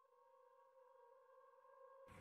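Near silence, with only a very faint steady tone of a few held pitches underneath.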